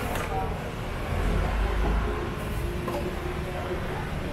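Busy street-market background: a steady low rumble with indistinct voices.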